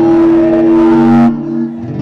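Live band music holding a long chord, with a loud burst of crowd noise over it that stops suddenly about a second in. The band's chord then sustains more quietly.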